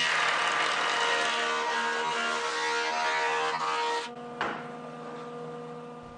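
Jointer planing a reclaimed pallet board as it is fed by hand: loud cutting noise over the machine's steady motor hum for about four seconds. The cut then ends with a short knock, and the machine's hum runs on more quietly, fading near the end.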